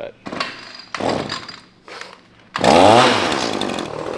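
Pole saw starting up suddenly about two and a half seconds in and cutting into a six-by-six treated timber post, loud and running on.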